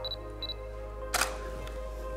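A camera shutter clicking once, about a second in, preceded by two short high electronic beeps half a second apart, over background music.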